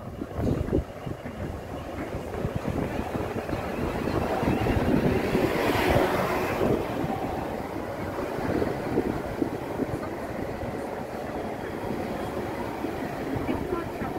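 Southern Class 377 electric multiple unit running into the station platform, its wheel and motor noise building to a peak about six seconds in, then settling into a steady run as the coaches pass close by. Some wind buffets the microphone.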